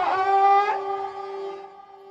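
A single held note on a wind or reed instrument, steady in pitch, full at first and then thinning and fading away over the last second.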